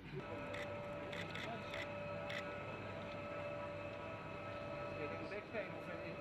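A steady hum at several fixed pitches, with several sharp clicks in the first half and brief voices near the end.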